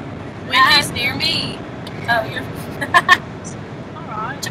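Steady road noise inside a moving car's cabin, with women's high, wavering voices over it without clear words, loudest about half a second in, and a couple of short sharp sounds near the end.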